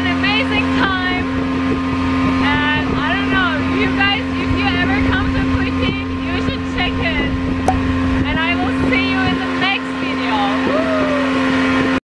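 Boat engine running at a steady, unchanging pitch while the boat is under way.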